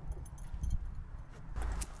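A few light clicks, then a short rustle as a person climbs through an open door into a pickup's driver's seat, over a low rumble.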